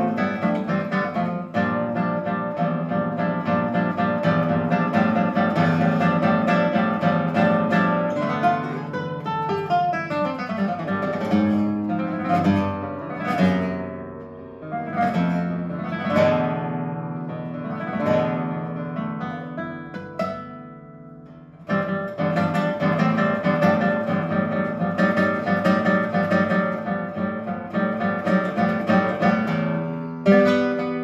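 Solo classical guitar played fingerstyle: fast, dense runs, thinning about a third of the way in to separate chords and notes left ringing and dying away, then a sudden return to fast playing a little past two-thirds of the way through.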